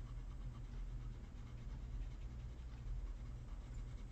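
Faint back-and-forth scratching of a colored pencil shading on paper, with pressure easing off, over a steady low room hum.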